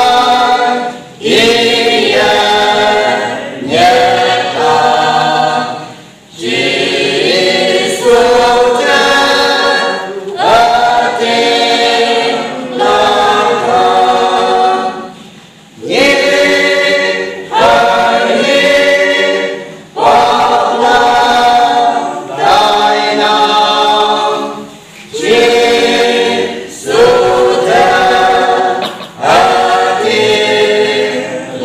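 Small mixed choir of men's and women's voices singing a Konyak gospel hymn a cappella, in sung phrases of about two seconds with short breaths between them.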